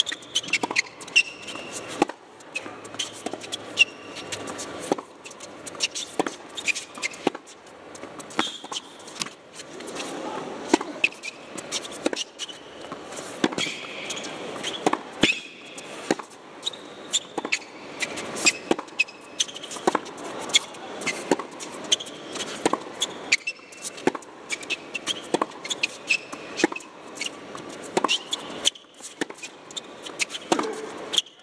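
A long tennis rally: racket strikes and ball bounces on a hard court, sharp pops about one to two a second with brief high shoe squeaks between them.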